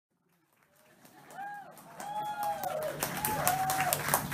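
Live concert audience whooping and clapping as the sound fades in from silence about a second in. The clapping grows denser, over a low steady hum.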